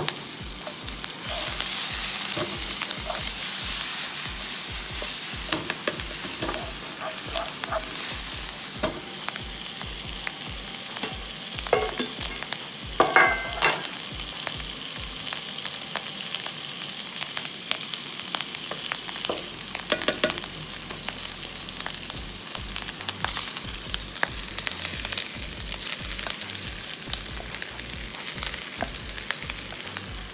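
Chopped garlic, diced ham and dried chilies sizzling in oil in a frying pan while being stirred with a wooden spatula: a steady crackling sizzle, louder in the first few seconds. A few louder scrapes and knocks come near the middle.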